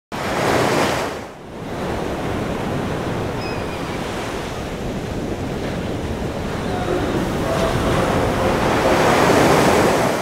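Sea surf breaking and washing on a rocky shore: a steady rush of waves, swelling about a second in, dipping briefly, then building slowly toward the end.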